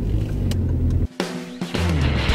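Steady low rumble of a car interior for about a second. It then cuts off, and music with held pitched notes starts.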